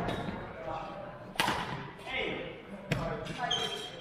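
Badminton rackets striking a shuttlecock twice during a rally, sharp cracks about a second and a half apart, echoing in a large gym hall, over voices.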